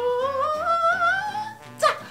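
A man's voice humming a long, slowly rising note that wavers near its top and fades about a second and a half in, over background music. A brief sharp sound follows near the end.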